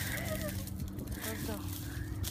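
Dry branches and twigs snapping and leaves crackling as a hiker pushes through brush, a few sharp snaps over a steady low rumble on the microphone, with faint voices.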